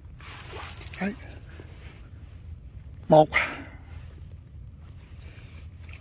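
Sparse speech: a man says a word or two, counting aloud, over a steady low background rumble with a brief hiss just after the louder word about three seconds in.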